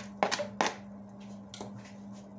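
Plastic cutting board scraped against the rim of a cooking pot as sliced beetroot is pushed off it into broth. There are three quick strokes in the first second and a lighter one later, over a steady low hum.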